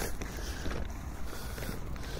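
Steady wind on a phone microphone: a low rumble with a hiss over it.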